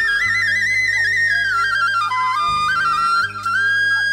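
Nepali salaijo folk-song music: a flute melody moving in quick ornamented runs and trills, over held low bass notes.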